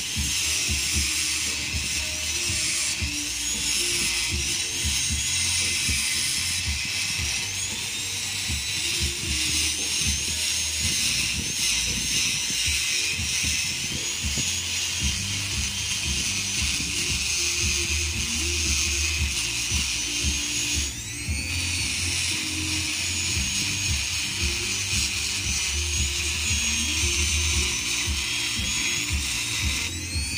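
A high-speed electric rotary tool whines as it grinds into the steel of an upper control arm's ball joint. Its pitch sags and recovers as it loads up, and it winds down and spins back up once, about two-thirds of the way through. Music plays underneath.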